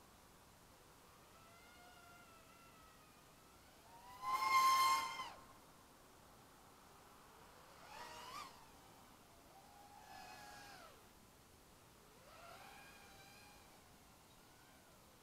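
A series of five drawn-out animal calls, each rising and falling in pitch. The loudest and highest comes about four seconds in, and fainter ones follow at intervals of a couple of seconds.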